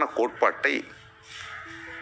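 A man speaking in Tamil for about the first second, then a short pause in which faint background music holds a few steady notes.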